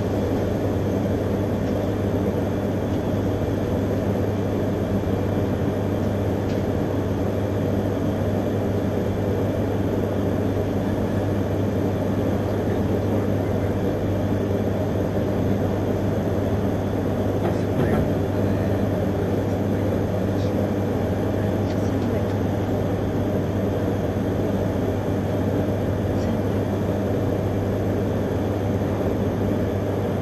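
Steady hum inside a stopped Akita Shinkansen Komachi (E3-series) passenger car, its onboard equipment running, with a constant low drone.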